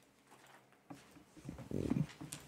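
Low rumbling noise close to a meeting-room microphone: a soft knock about a second in, then a short, louder low throaty rumble near the end.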